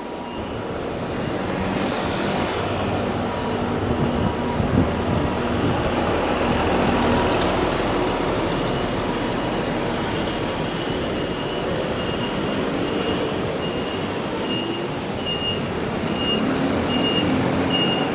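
Busy city street traffic: buses, trucks, cars and scooters running past in a steady wash of road noise, with a repeated high beep through the second half.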